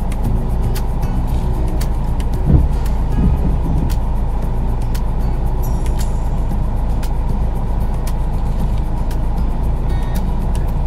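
Steady low rumble of a vehicle engine running, with a brief thump about two and a half seconds in.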